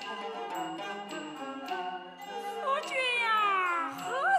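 Huayin laoqiang ensemble music from Shaanxi: plucked and bowed Chinese string instruments play a busy melody with a few sharp knocks. From about two seconds in, a long falling slide in pitch enters and grows louder to the end.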